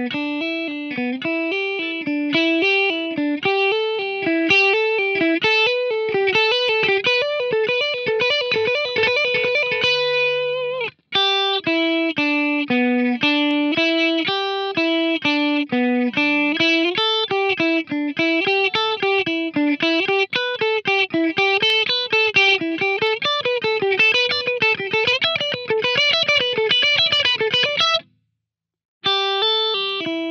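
Electric guitar playing single-note pentatonic licks, with notes bent and wavering in pitch. The first lick ends on a held note about ten seconds in. After a brief break comes a second, longer lick, then a short pause near the end and the start of a third.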